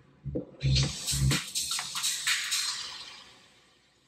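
Electronic dance track played through a Pioneer DDJ-FLX4 DJ controller with a Smart CFX filter effect engaged. A kick drum beats about twice a second for the first second and a half. Then the bass cuts out, leaving a hissing, washed-out tail that fades to near silence by the end.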